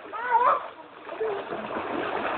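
River water splashing and churning as people wade and swim through it, with a short high-pitched cry from a person just after the start.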